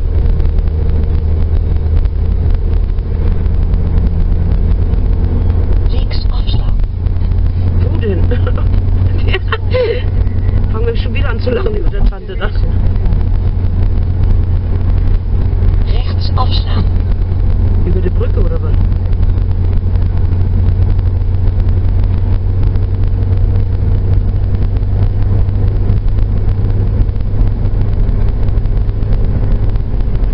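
A car driving at road speed, heard from inside the cabin: a steady low drone of engine and road noise, with a person's voice breaking in a few times around the middle.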